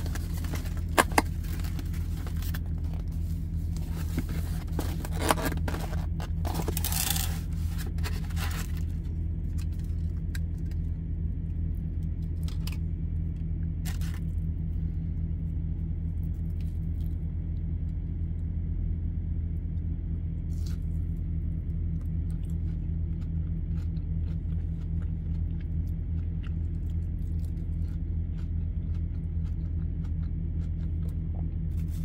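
Takeout food packaging being handled: crinkling, rustling and scraping for the first nine seconds or so, then only occasional small clicks and scrapes as a mozzarella stick is dipped in a sauce cup. A steady low hum runs underneath.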